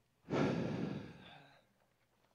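A man sighing into a close headset microphone: one long breath out, loud at first and trailing off over about a second.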